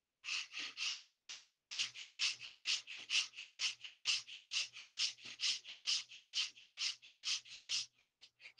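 A person breathing forcefully in a quick, even rhythm of about two sharp breaths a second, through the nose, as in a yogic breathing exercise.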